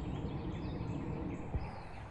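Outdoor background noise: a steady low rumble with a few faint bird chirps, and a single soft thump about one and a half seconds in.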